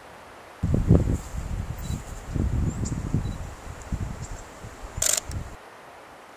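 Wind buffeting the microphone outdoors, an irregular gusty low rumble that sets in just after the start and drops away near the end, with one short sharp click about five seconds in.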